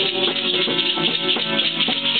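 Live acoustic guitars strummed together in a steady rhythm, with a bright rattling shake running through the beat.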